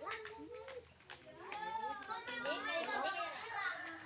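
Children's voices chattering indistinctly, softer than the talk around them, picking up about halfway through.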